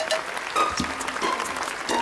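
Studio audience applauding, with the song's instrumental introduction coming in faintly about half a second in.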